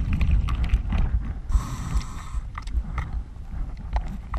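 Underwater sound through a diver-mounted GoPro's housing: a low rumble with irregular muffled knocks and clicks as the diver moves along the river bottom, and a hiss lasting about a second, starting about a second and a half in.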